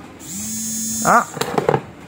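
A man's drawn-out "uh" and a short word, then a single knock about a second and a half in as a plastic e-bike battery pack is handled and lifted off the table.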